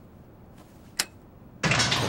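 A single sharp click over a faint background hiss about a second in, then a man's voice begins near the end.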